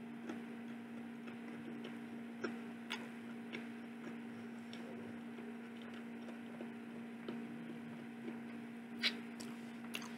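A person chewing a mouthful of chicken burger, with a few scattered soft mouth clicks, the strongest near the end, over a steady low hum.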